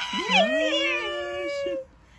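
A drawn-out, wordless vocal 'ooh' of excitement that rises and then holds for nearly two seconds before stopping sharply. It sounds like more than one voice at once.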